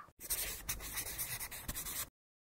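A scratchy, papery rustling sound effect with small clicks, lasting just under two seconds and cutting off suddenly.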